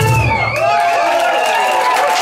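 A band's final chord cuts off sharply at the start, followed by the small audience clapping and cheering.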